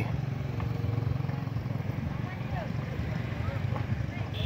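Steady low rumble of a motorbike engine running nearby.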